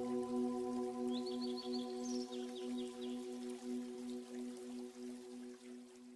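Ambient background music: a soft held chord of bell-like tones pulsing gently a few times a second and fading out at the end. A short run of high chirps sounds over it about a second in.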